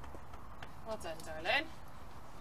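A steady low background rumble with a few faint light clicks early on, and a woman saying one short word about a second and a half in.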